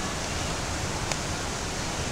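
Steady rush of a forest stream running high after heavy rain, with one light click about a second in.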